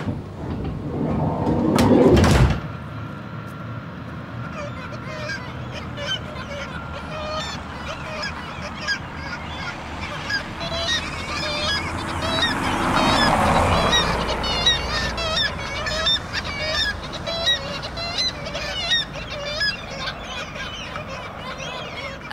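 Many black-legged kittiwakes and common gulls calling over and over. A loud rushing noise swells in the first couple of seconds and cuts off suddenly.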